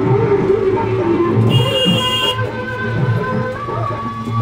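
Music with a regular low beat and a wavering, sliding melody. A short high steady tone sounds for under a second about a second and a half in.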